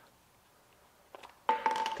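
A few light clicks of metal parts about a second in, as the Milwaukee Fuel impact driver's impact mechanism is bumped to free a part. Before them it is near silent.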